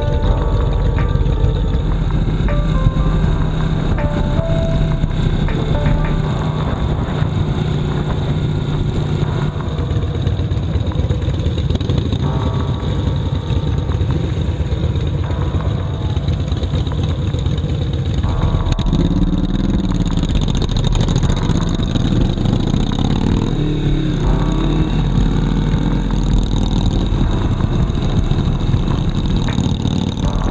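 Motorcycle engines running, idling in traffic and then under way, with music playing alongside. The pitch rises and falls about two-thirds of the way through as the bikes move off.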